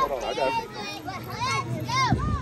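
Young children's voices: several kids calling out and chattering at once, high-pitched and overlapping.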